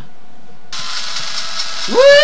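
A steady hiss starts about two-thirds of a second in. Just before the end, a high-pitched scream rises sharply and holds.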